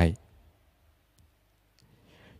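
A man's voice ends a word just at the start, then near silence with two faint clicks in the pause.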